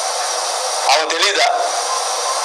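A voice speaking briefly, about a second in, over a steady loud hiss. The sound is thin with no bass, like a noisy recording played back.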